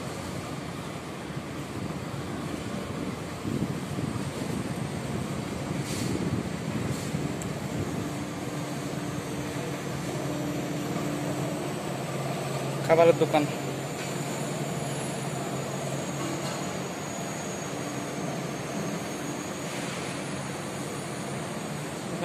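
Steady low background hum and rumble, like ventilation machinery or distant traffic carrying through an open building, with a short burst of a voice about halfway through.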